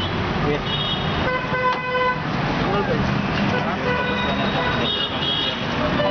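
Busy street noise with a vehicle horn sounding once for about a second, starting a little over a second in, and shorter, higher-pitched toots before and after it, over a steady hubbub of traffic and voices.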